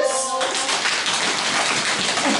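A group of people making a drum roll with their hands: many hands drumming rapidly at once, a dense steady rattle.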